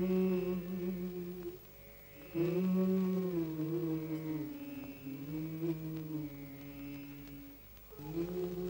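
Slow chant-like vocal music: a voice holding long notes in phrases of a couple of seconds, with brief pauses between them.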